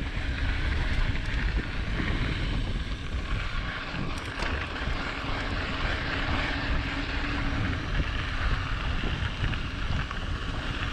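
Wind buffeting the camera microphone over the rumble of mountain bike tyres rolling down a dirt trail.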